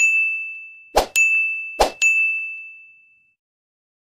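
Animated end-screen button sound effects: three bright chimes about a second apart, the later two each just after a short pop, each ringing on and fading out. They mark the Like, Share and Comment buttons popping onto the screen.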